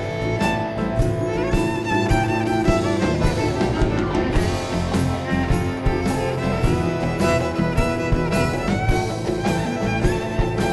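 Live band playing an upbeat instrumental: a fiddle carries the melody over hand drums (congas) beating a steady rhythm.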